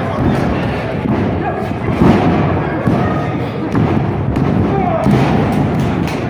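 Wrestlers' bodies slamming onto the ring mat: several heavy thuds, the loudest about two seconds in, over crowd voices shouting.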